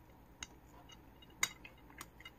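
A spoon clicks against a bowl while eating: one sharp clink about one and a half seconds in, with a fainter tap about half a second in.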